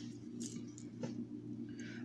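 Steady low hum with two faint clicks about half a second apart, from a small plastic jar of paydirt being picked up and handled.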